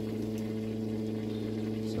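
A steady, low machine hum with several evenly spaced pitches, unchanging throughout.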